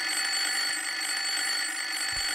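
An old-fashioned desk telephone's bell ringing continuously, a cartoon sound effect.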